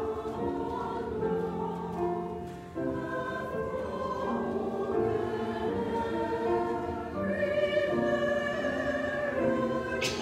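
Mixed church choir singing a sacred anthem in harmony, with sustained chords that move from note to note and a short pause between phrases about three seconds in.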